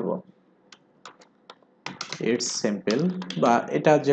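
Computer keyboard typing: a short run of faint key clicks about a second in, while a short phrase is typed. A man talks just before it and again from about two seconds in, louder than the typing.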